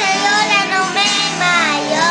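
A young boy singing over a recorded instrumental backing track, holding long notes that slide in pitch.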